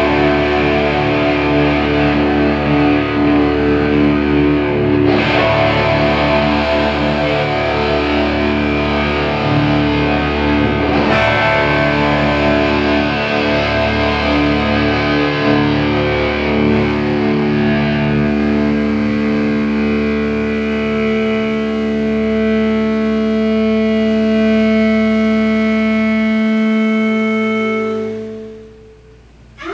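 Several distorted electric guitars with drums, played live as a loud, dense drone chord that is held steadily through many layered notes. The deepest part drops out shortly before the end, and the chord stops right at the end as the piece finishes.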